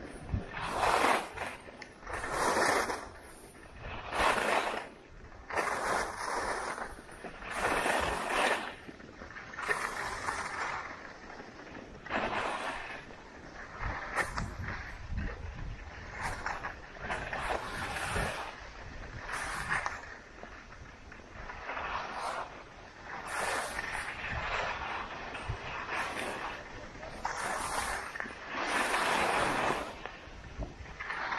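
Skis scraping and carving on packed, groomed snow, a swell of edge noise on each turn, about one every one and a half to two seconds.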